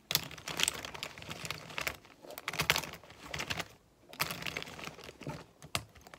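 Plastic markers and highlighters handled close to the microphone: rapid clicking and tapping with scratchy rubbing against a fabric pencil case, in bursts with short pauses about two and four seconds in.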